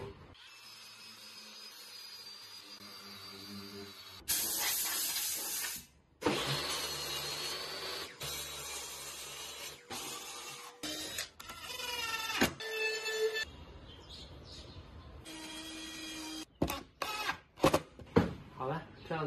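A run of power tools working OSB board in short cuts: a cordless grinder with a sanding pad sanding, a DeWalt benchtop table saw cutting, and a cordless trim router whining as it spins up. The stretches of motor noise start and stop abruptly, with short breaks between them.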